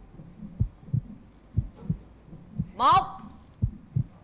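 Heartbeat sound effect of low double thumps, about one pair a second, laid under a game-show countdown as a tension cue. A voice calls out the last count about three seconds in.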